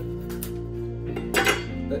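Background music, with a light click and then a louder knock about a second and a half in, as a steel chef's knife is laid down on a wooden chopping board.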